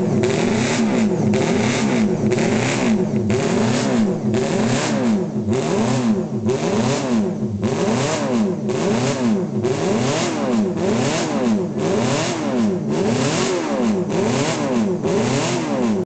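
A classic racing motorcycle's engine being revved while stationary. The throttle is blipped over and over, a little faster than once a second, and each rev rises and falls back. It stays loud throughout.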